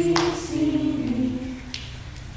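Several voices singing together without instruments, a held wordless note that slides down in pitch about a second in, with a brief sharp sound just after the start.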